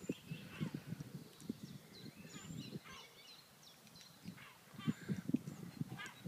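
Small birds chirping in short scattered calls, with a brief trill near the end, over faint soft scuffles and thuds of two dogs play-wrestling on dry leaf litter.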